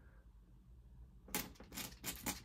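Near silence, then from about a second and a half in a quick run of short scratches as a pen draws ink strokes across paper.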